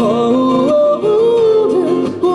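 A man singing long held notes that slide up and down in pitch, over a strummed acoustic guitar.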